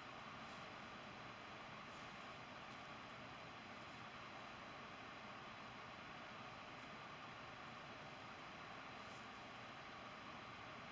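Near silence: a steady, even hiss of room tone.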